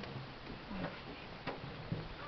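A few sharp, irregularly spaced clicks, about four, over a low background hiss.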